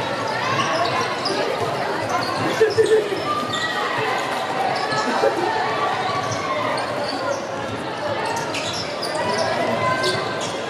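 Basketball game on a hardwood court in a large echoing hall: the ball bouncing as it is dribbled and players' and spectators' voices, with a couple of louder thuds about three seconds in.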